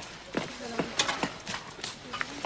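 Irregular light knocks and clicks, about six or seven in two seconds, from people moving about and handling things at a camp.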